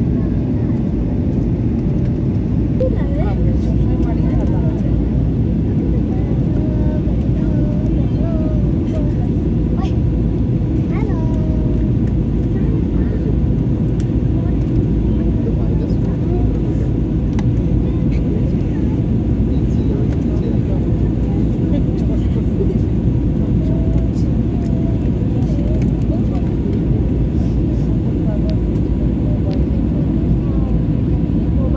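Steady jet airliner cabin noise heard from a window seat on descent: a loud, even low rush of air and engines, with faint voices murmuring under it.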